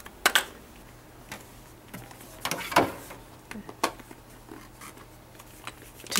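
Hard plastic parts being handled: a sharp knock just after the start, a cluster of knocks and scrapes in the middle, another knock about a second later and a few small clicks, over a faint steady low hum.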